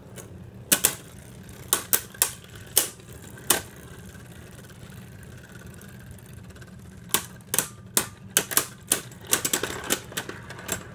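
Two Beyblade Burst tops, Caynox C3 4Flow Bearing and Cognite C3 6Meteor Trans, spinning in a plastic stadium: a steady whir runs under sharp clacks as they knock together. A string of hits comes in the first few seconds, then a lull of about three seconds, then a rapid flurry of clacks near the end.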